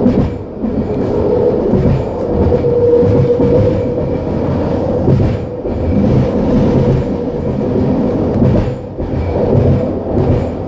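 Vancouver SkyTrain ACTS Mk1 linear-induction-motor train running at speed, heard from inside the lead car: a continuous wheel-and-rail rumble with a steady hum over it, the hum strongest a few seconds in.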